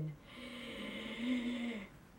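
A person drawing one long, deep breath in, lasting about a second and a half, with a low steady tone running through it. It is an exaggerated breath to fill the lungs before blowing a nose flute.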